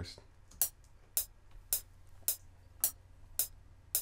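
FL Studio's metronome clicking steadily at 108 BPM: short sharp clicks just under two a second, seven in all.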